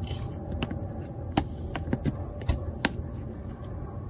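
A handful of sharp, irregular clicks and snaps of the plastic fog-light cutout as it is cut with a razor blade and worked free. Behind it, crickets chirp in a steady, rapid rhythm.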